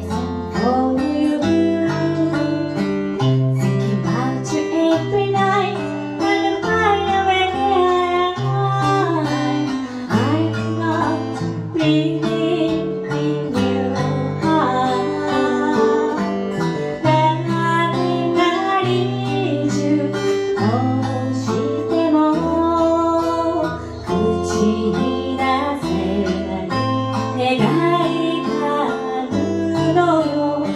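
A woman singing a slow ballad, accompanied by a plucked acoustic guitar with steady bass notes and by a shamisen.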